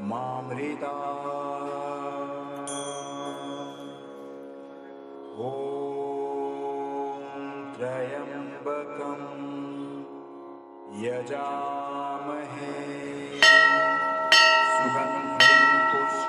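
Devotional mantra-style music with long held notes; near the end a hanging temple bell is struck three times, about a second apart, each strike ringing on, louder than the music.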